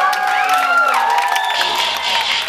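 A dance routine's mixed soundtrack carrying voice-like sounds that glide up and down in pitch, over an audience cheering and clapping.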